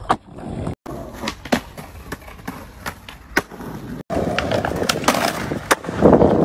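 Skateboarding: the board's tail and wheels clack sharply against the ground several times while the wheels roll over pavement. After a break about four seconds in, the rolling gets louder and steadier.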